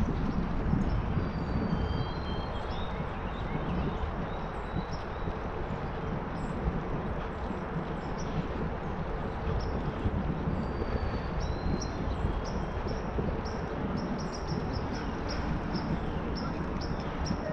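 Bicycle tyres rolling on an asphalt trail with wind on the microphone, a steady rushing rumble. Short high chirps come and go over it, with a quick run of them near the end.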